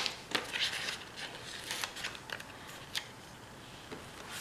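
Paper planner sticker sheet being handled and a sticker peeled from its backing: light rustling with a few scattered sharp paper ticks, quieter after about three seconds.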